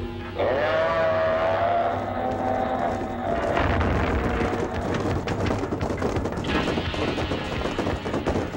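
A cartoon monster's long, high-pitched cry, rising slightly and then held for about three seconds, over dramatic background music. After it, the music goes on with rumbling, clattering action effects.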